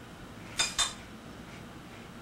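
A spoon clinking twice against a cereal bowl about half a second in: two sharp, ringing clinks a fifth of a second apart.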